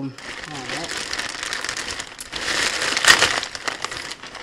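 Thin plastic bag crinkling and rustling as hands open it and rummage inside, loudest around three seconds in.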